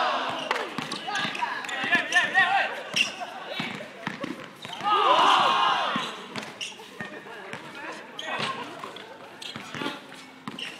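Basketball bouncing on a hard outdoor court, repeated thuds throughout, with players' voices calling out over it, loudest at the start and around the middle.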